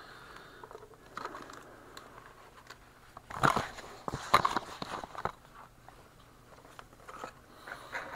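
Off-camera handling noises: soft rustling, then a cluster of sharp crackling clicks from about three and a half to five seconds in, as packaging or small objects are handled on the bench.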